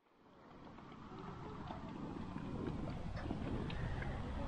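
Faint outdoor background noise with wind rumble on the microphone, fading in from silence over the first second or two and then holding steady, with a few faint ticks.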